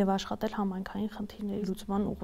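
Only speech: a woman talking.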